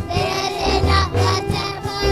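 A group of children singing a gospel song into microphones over instrumental accompaniment with a repeating bass line.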